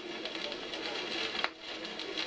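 Steady hiss of surface and background noise from an old commentary record playing on a turntable, with one sharp click about one and a half seconds in.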